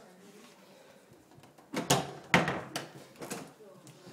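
A quiet stretch, then a short cluster of knocks and scuffs starting about two seconds in and lasting about a second and a half.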